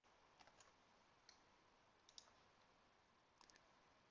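A few faint computer keyboard key clicks, scattered singly and in quick clusters of two or three, as a spreadsheet formula is typed and entered.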